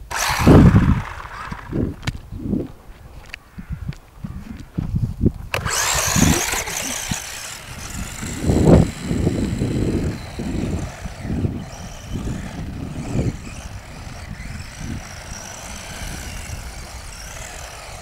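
Electric motor and gears of a toy-grade RC buggy whining steadily from about five seconds in as it drives away, under gusts of wind buffeting the microphone. Before that, a few low thumps as the car is handled.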